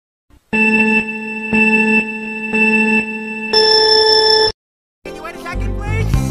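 Countdown beeps: three lower beeps about a second apart, then one higher, longer beep. After a brief silence, music starts about five seconds in.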